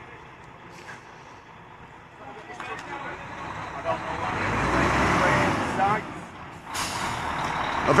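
A heavy tipper lorry's diesel engine running as it drives off. It grows louder to a peak around the middle, with a low rumble. Near the end comes a sudden hiss of air brakes.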